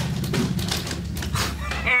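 Men laughing, over a steady low hum that cuts off abruptly near the end.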